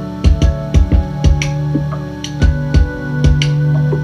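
Lo-fi beat on a Korg Volca Drum drum machine, with kick hits and snappy clicks in a repeating pattern, over held Yamaha keyboard chords and a steady bass note.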